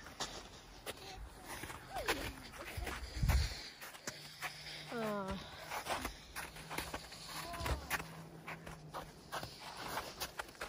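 Footsteps in packed snow, a steady run of short crunches. A low thump comes about three seconds in, and a brief voice-like call, falling in pitch, a couple of seconds later.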